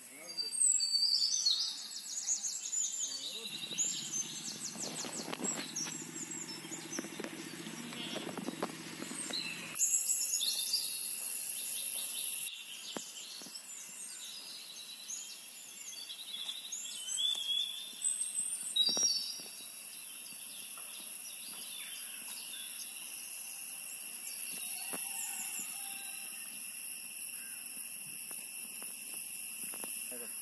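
Birds chirping and calling on and off over a steady high-pitched insect drone, with a low rumble from about three seconds in until about ten seconds in.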